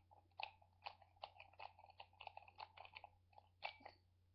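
A spoon stirring green powder into a small glass of water, with many quick faint clinks against the glass and a short ring after each.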